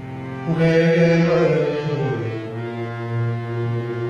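Harmonium playing sustained reed notes that swell louder about half a second in, then a wavering melodic phrase falls and settles onto a low held note.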